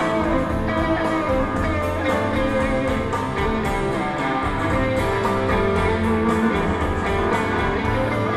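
Instrumental break of band music led by guitars, with a steady beat and no singing.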